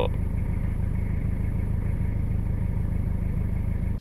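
Toyota Hilux diesel engine idling steadily at about 900 rpm, heard from inside the cab.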